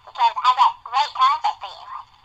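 A person's voice speaking in short phrases, thin and telephone-like with no low end.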